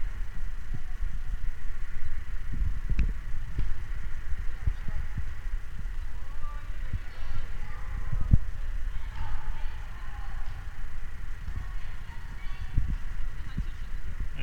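Sounds of a futsal game in a sports hall: irregular thuds of the ball and players' feet on the wooden floor over a steady low rumble, with faint shouts echoing in the hall.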